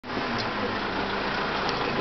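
A motor vehicle's engine running steadily, a low hum under an even rush of noise.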